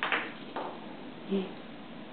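A woman speaking and laughing: a couple of short breathy laughs, then a brief voiced sound.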